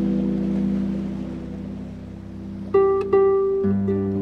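Solo harp playing a slow, calm piece. Held notes ring and fade for the first two and a half seconds, then new plucked notes sound near the end, joined by a low bass note.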